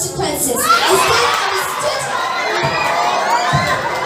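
A crowd of children shouting and cheering, many high voices overlapping at once, swelling up about half a second in.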